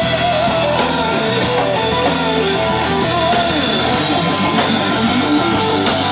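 Live rock band playing loud, with electric guitars over a drum kit in an instrumental stretch with no singing.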